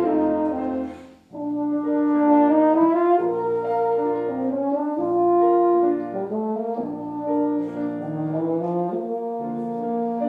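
French horn playing a slow melody of held notes with grand piano accompaniment, with a short break about a second in before the phrase resumes.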